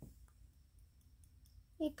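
A few faint, sparse clicks in a quiet room, then a young female voice starts speaking near the end.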